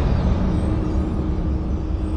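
Low, steady rumbling drone from the trailer's sound design: the tail of a deep boom slowly fading, with a faint steady hum joining about half a second in.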